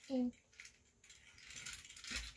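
A toy airplane pushed along carpet, its wheels and mechanism giving a faint rattling whir that grows a little louder toward the end.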